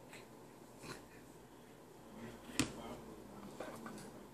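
Faint clicks and small mouth sounds from a baby working at the spout of a plastic sippy cup, with one sharper click about two and a half seconds in.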